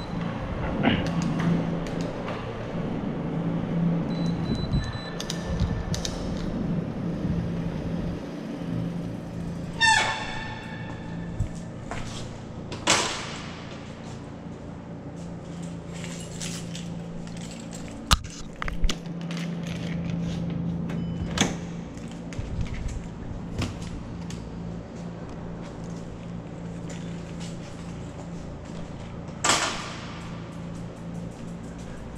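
A bicycle ridden across a concrete parking-garage floor and brought to a stop, with one short squeal about a third of the way in. Then a few sharp clicks and thunks as a steel door is unlatched and pushed open near the end, over a steady low hum.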